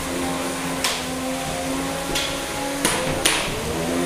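Drum-spinner weapons of two 3 lb combat robots running with a steady hum, broken by four sharp hits: one about a second in, one about two seconds in and two close together near the end.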